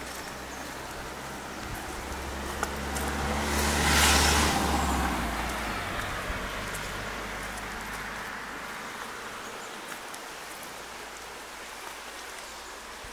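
A car drives past close by: engine and tyre noise build to a peak about four seconds in, then fade away as it recedes down the road.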